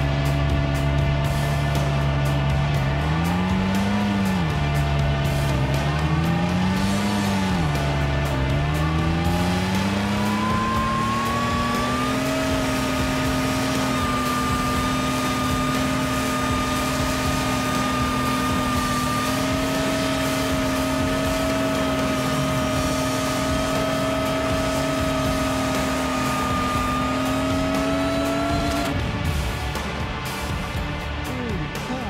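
Pickup truck engine revving hard as it plows through deep snow with its wheels spinning. The revs rise and fall twice, then climb about ten seconds in and are held high and steady for the rest.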